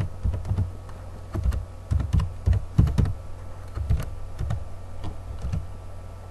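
Typing on a computer keyboard: a run of irregular key clicks, some in quick pairs, that stops near the end, over a steady low hum.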